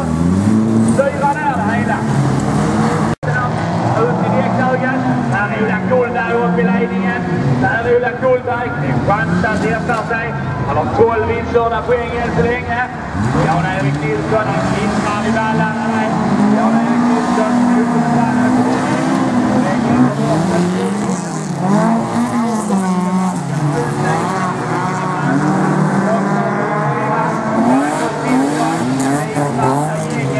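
Several folkrace cars racing on a dirt track, their engines revving up and falling back again and again as they accelerate and lift through the corners. The sound cuts out for an instant about three seconds in.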